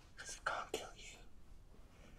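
A man whispering a few faint, breathy words close into another man's ear, over about a second near the start.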